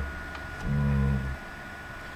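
A man's short hesitation sound, a level "uh" held for about half a second in a pause between phrases.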